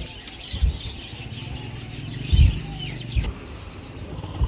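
Birds chirping, many short overlapping calls, with about three dull low thumps, the loudest a little over halfway through.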